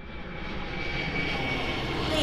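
Airliner engine noise fading in and growing louder: a steady, even rumble with a faint high whine.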